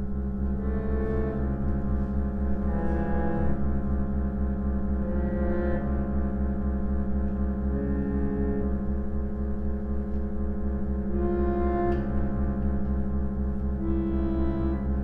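Two 1950s Yamaha reed organs (pump organs) playing slow early-music-style counterpoint: a low drone chord held throughout under upper reed notes that change every couple of seconds.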